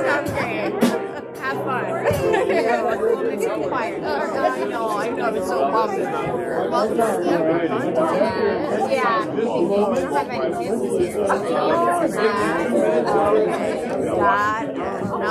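Congregation chatting, many voices talking over one another in a large hall as people greet each other. Held instrumental notes sound under the talk and stop about two seconds in.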